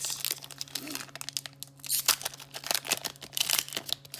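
Foil booster-pack wrapper crinkling in rapid, irregular crackles as it is torn open and handled by hand.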